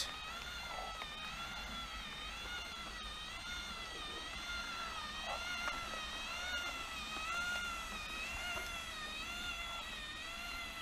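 Magnorail drive motor and its gearing running with a steady whine whose pitch wavers up and down in a slow, even cycle. This is a persistent noise that wrapping the motor in cloth, packing foam around the motor and cogs, and oiling the motor with WD-40 have not cured.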